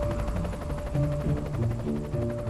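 Helicopter in flight, its rotor chop a fast, even beat, mixed with a music score.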